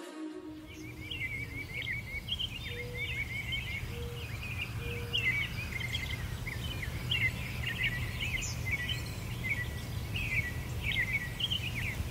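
Several songbirds chirping and trilling outdoors over a steady low rumble of background noise, with three short, low whistled notes about a second apart near the start.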